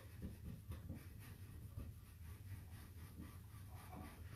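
Faint, repeated strokes of a natural bristle brush scrubbing loose silver leaf off a stenciled surface, clearing it from areas with no adhesive underneath so the pattern shows.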